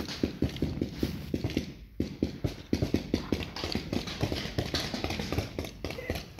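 A rapid series of dull, low thumps, a few a second, with a short break about two seconds in.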